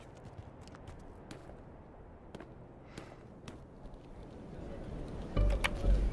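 Faint, irregular footsteps of several people walking on a hard floor. Near the end a louder, deeper sound comes in.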